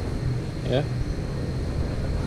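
A steady low rumble, with a single short spoken word just under a second in.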